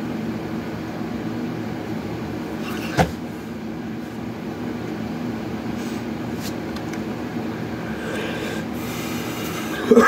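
A steady low mechanical hum made of several held tones, broken by a sharp click about three seconds in and a louder knock at the very end.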